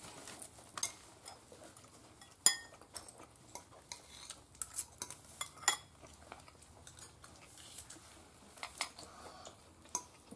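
Sparse, sharp clicks and clinks of tableware as a meal is eaten, the clearest about two and a half seconds and just under six seconds in.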